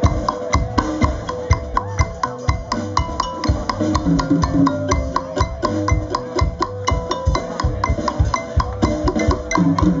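A live band playing a fast song: a mallet keyboard is struck rapidly over drums and bass.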